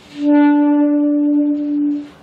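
Alto saxophone holding one steady note for about two seconds, blown with full breath but deliberately weak air pressure.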